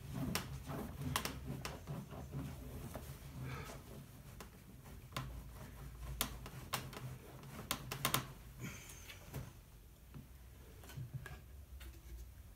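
A cloth rubbing and scrubbing over a leaded stained glass panel lying on a wooden workbench, with irregular clicks and light knocks as the panel and hands shift. Under it runs a steady low hum.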